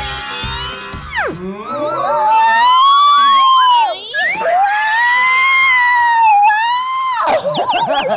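A woman screaming in delight: two long, high-pitched screams, one after the other, held for several seconds, over background music.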